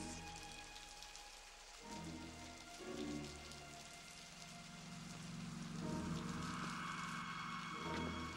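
Steady rain falling, under low, held notes of film-score music that swell in a few times.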